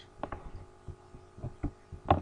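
A handful of faint, scattered knocks and clicks over a steady low electrical hum.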